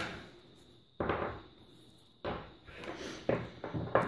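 A few short knocks and scrapes of rolls of washi tape being handled and picked up on a wooden tabletop beside a glass jar, roughly one a second with a quicker cluster near the end.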